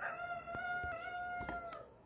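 A rooster crowing: one long, nearly level call of about two seconds that drops in pitch at the end. A few light clicks sound during it.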